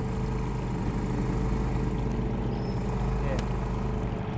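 A small engine on a bowfishing jon boat running steadily: an even, unbroken hum of several low tones.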